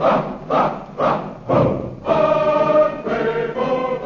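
A choir singing with accompaniment: four short, punched accents about half a second apart, then a held chord.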